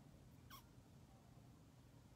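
Near silence: room tone with a low steady hum, and one faint, short squeak falling in pitch about half a second in.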